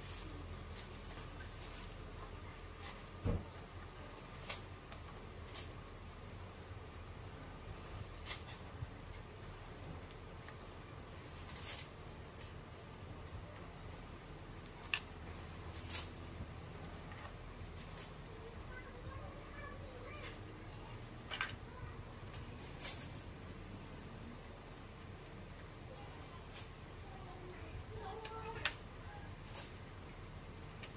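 Coins clinking as they are picked up and set down onto stacks on a table: about a dozen sharp, short clicks at irregular intervals, over a steady low hum.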